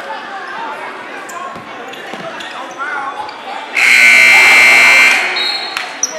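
Gymnasium scoreboard buzzer sounding once, a steady loud horn tone lasting a little over a second, about four seconds in, as the game clock runs out at the end of the period. Crowd chatter and a basketball bouncing go on around it.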